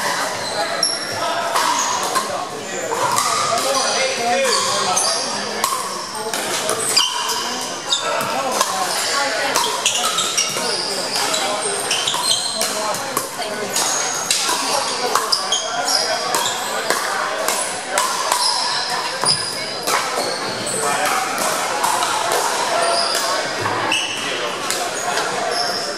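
Pickleball rallies in a large gym: sharp pops of paddles hitting a plastic ball and bounces on the hardwood floor, many times from several courts, with short sneaker squeaks and background chatter echoing in the hall.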